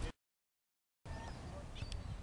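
Dead silence at a cut between recordings, broken by a split-second blip of sound right at the start. About a second in, outdoor ambience returns, with a low rumble of wind on the microphone and a few faint, distant, indistinct sounds.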